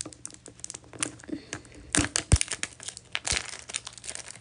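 Thin plastic wrapper on a plastic toy egg crinkling and tearing as fingernails pick at it and peel it off. It comes as a run of small sharp crackles, the loudest about two seconds in.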